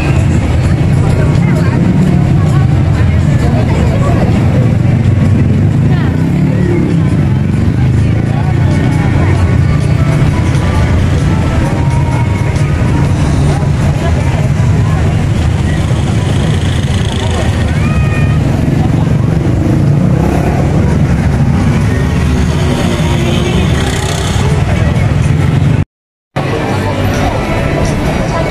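Busy city street ambience: a steady rumble of traffic with the chatter of a crowd of passers-by.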